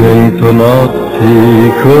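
An Italian birthday song playing: a singer's held notes with vibrato over a steady accompaniment.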